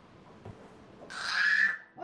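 Infant giving one short, high-pitched squeal, slightly rising, about a second in.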